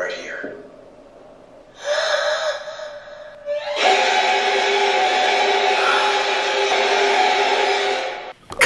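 Horror film score: a brief wavering sound about two seconds in, then a loud, sustained dissonant chord that starts abruptly and is held steady for the last four seconds.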